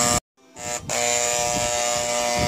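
A steady, fixed-pitch mechanical buzz that drops out abruptly for a moment about a quarter second in, then resumes unchanged.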